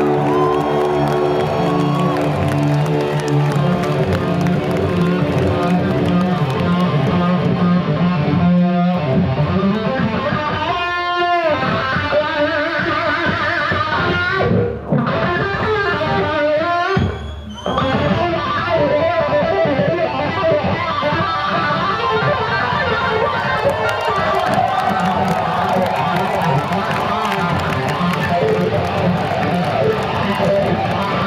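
Loud live electric lead guitar through stage amplification, two guitarists trading solos. Held notes with vibrato and bends open it, a fast run of notes comes about ten seconds in, and the playing breaks off briefly twice near the middle.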